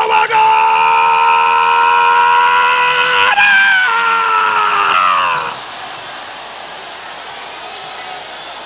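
A worshipper's long, high, sustained scream, held at one pitch for about three seconds, then a second shorter cry that slides down in pitch and breaks off about five and a half seconds in. A lower, steady crowd din follows.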